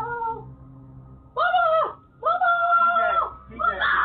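A cat meowing four times, each call rising and then falling in pitch, the third the longest.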